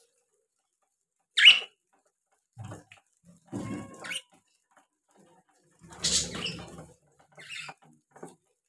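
Budgerigars chirping in short, scattered calls, with one sharp, loud chirp about a second and a half in. Bursts of rustling and light thumps are mixed in, around the middle and about six seconds in.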